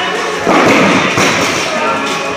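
A loaded barbell dropped from overhead onto a rubber-matted gym floor: a heavy thud about half a second in, followed by a few smaller knocks as the bar and plates bounce and settle.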